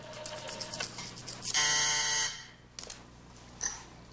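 Telephone switchboard buzzer sounding once for under a second, about a second and a half in: the signal of an incoming call from a guest's room phone. Faint clicks and a low hum around it.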